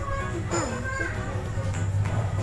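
Background music with a steady low beat, and a child's voice briefly heard about half a second in.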